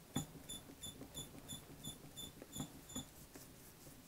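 Foam sponge brush rubbing on the plastic clock frame as Mod Podge glue is spread in quick strokes, giving a faint, high squeak about three times a second.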